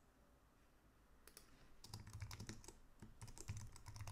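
Typing on a computer keyboard: a quick run of keystrokes starting about a second in and going on to the end.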